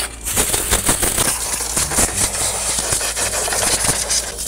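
Compressed-air blow gun blasting a steady, loud hiss of air into a desktop PC case's front and its cooling fans to blow out dust, starting a moment in after a brief lull.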